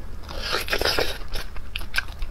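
A crunchy bite into the crust of a sauce-glazed chicken drumstick, heard close up. A dense burst of crunching comes about half a second in and lasts under a second, followed by a few sharp crackles as she chews.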